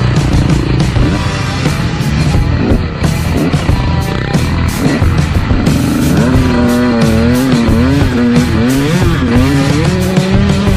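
Two-stroke dirt bike engine revving up and down while riding, its pitch rising and falling, under rock music.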